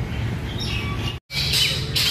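Birds chirping and squawking, with short high chirps after a brief dropout to silence about a second in, over a steady low background rumble.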